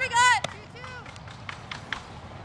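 A high-pitched voice shouting four quick calls in a row, cut off by a sharp click about half a second in. One fainter call and a few light taps follow.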